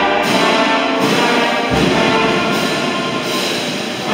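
Brass ensemble playing a march in sustained chords, the harmony changing about once a second.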